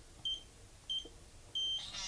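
Atlas EL703 electronic cabinet lock's keypad beeping as code keys are pressed: two short high beeps, then a longer beep near the end as the code is accepted.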